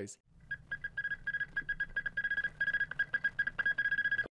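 Morse code played as a single steady high beep, keyed on and off in short and long tones, starting about half a second in.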